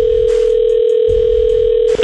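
Telephone ringback tone on an outgoing call: one steady ring of about two seconds, cut off as the call is answered.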